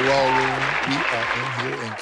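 Intro music with a male vocal over a dense, noisy backing that could include crowd or applause sounds, gradually getting quieter toward the end.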